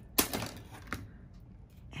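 A small handmade paper book being handled on a cutting mat: a sharp tap near the start, a short rustle of paper pages, then a lighter click just before a second in.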